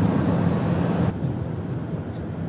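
Road and wind noise inside a van driving at motorway speed, with a steady low engine hum underneath. The noise drops suddenly to a quieter drone about a second in.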